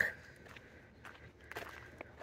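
Faint footsteps on a dry dirt trail, soft and irregular, after a brief trailing-off of a man's voice at the start.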